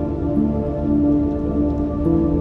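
Slow ambient music with long held notes that change pitch every second or so.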